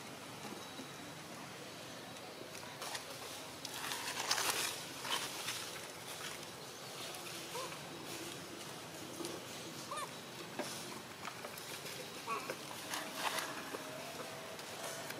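Macaques moving about on dry leaf litter: scattered rustles and crackles, loudest around four to five seconds in, with a few faint short squeaks.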